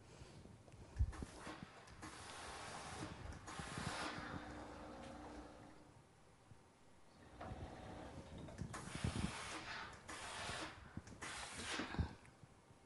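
Faint rustling and hissing in several bursts as sewn fabric is handled and the seam is pressed open with an iron.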